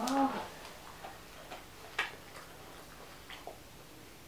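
A few small, light clicks and taps, scattered irregularly, about seven in all, the sharpest one about halfway through. A brief pitched voice sound comes at the very start.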